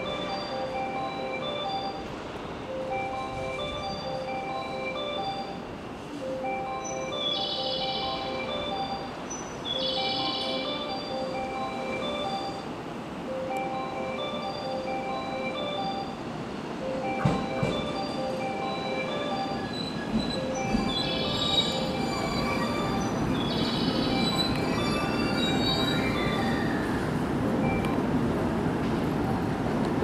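A platform's train-approach chime melody repeats over and over while a train pulls into the station. The train's rumble grows louder in the second half, with four brief high-pitched squeals from the train, in two pairs.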